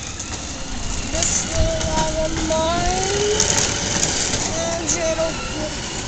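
A quiet voice making short wordless sounds, over a steady background of rumble and hiss.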